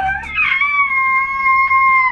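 A woman's long, high-pitched excited squeal, rising at first and then held on one steady pitch before cutting off sharply at the end.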